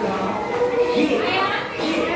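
A group of young children shouting and chattering together while playing, several voices overlapping.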